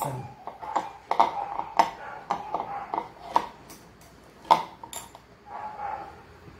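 Kitchen utensils and bowls being handled on a granite countertop: a string of irregular light clinks and knocks, with a wire whisk being put down among them.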